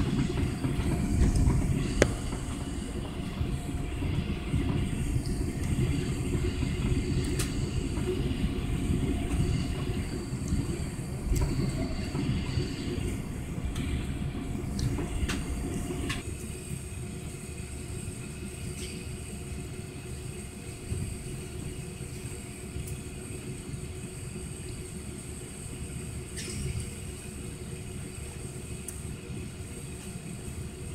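Cabin noise of an Airbus jet airliner on its takeoff roll: a loud, rattling rumble of the wheels on the runway and the engines at takeoff power. About halfway through, the rumble drops away suddenly, as at liftoff, leaving a quieter, steady engine and airflow noise.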